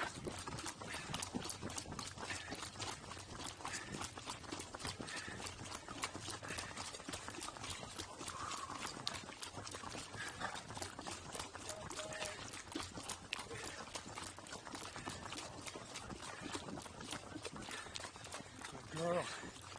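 Pack burro walking on pavement, its hooves clip-clopping steadily with a continual patter of clicks, heard close up from the pack saddle it carries.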